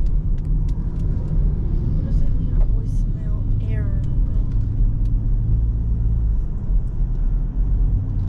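Dodge Charger Scat Pack's 392 (6.4-litre) HEMI V8 running at low speed in traffic, heard from inside the cabin as a steady low drone. A faint voice comes through in the middle.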